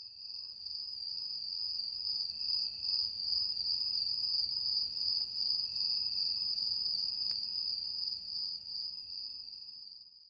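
Crickets chirring in a steady, high-pitched chorus, with a softer rhythmic pulsing lower down. It fades up over the first second and dies away at the very end.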